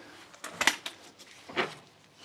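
Light metallic clinks from a car's suspension link and hand tools being handled: a short cluster of clinks about half a second in, and another just after one and a half seconds.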